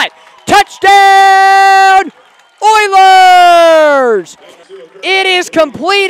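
A man's voice calling a long, drawn-out "Touchdown!": two held syllables, the first on one steady pitch for about a second, the second sliding down in pitch, followed by ordinary speech near the end.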